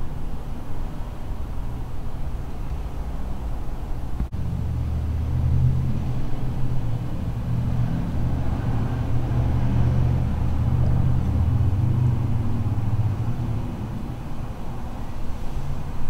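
Low engine rumble of a vehicle outside, swelling about four seconds in and easing off a few seconds before the end.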